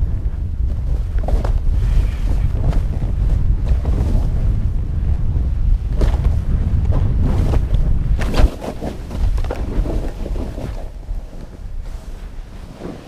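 Wind rushing over an action camera's microphone as a snowboard runs through deep powder snow, with the board's hiss and crunch through the snow. The loud rumble drops about eight and a half seconds in, as the rider slows.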